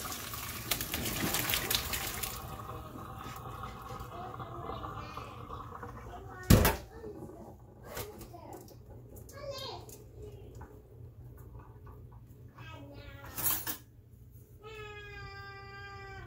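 Hot water and boiled spinach poured from a pot into a stainless steel colander in a metal sink, splashing down for about two seconds. Then a single loud knock about six and a half seconds in, with scattered clinks of metal. Near the end a voice holds a steady note.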